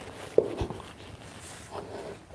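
Yoga blocks being slid and set down on a yoga mat, with a soft knock about half a second in, against quiet room tone.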